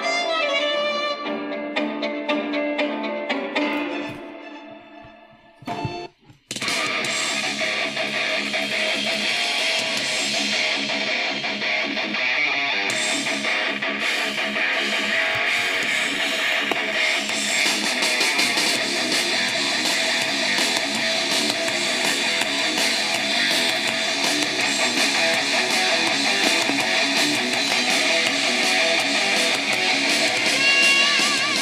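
Music playing through the small speaker of a Tiemahun FS-086 portable emergency radio, thin with little bass. One piece fades out about five seconds in, and after a brief gap a different song with electric guitar starts and plays on.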